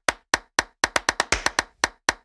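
A quick run of short, dry percussive clicks like a wood block, about five a second in an uneven rhythm: a transition sound effect for an animated title card.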